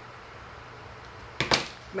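A pair of scissors set down on a plastic cutting mat, one short sharp clack about one and a half seconds in, over a low steady room background.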